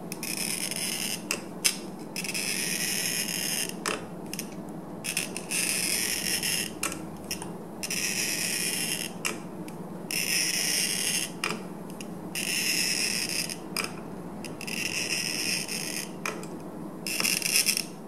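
Glass-cutting wheel of a bottle cutter scoring a wine bottle as it is turned by hand and pressed down firmly: a high, scratchy sound in about eight strokes, each a second or so long with short pauses between as the bottle is re-gripped. It is cutting the score line all the way around the bottle.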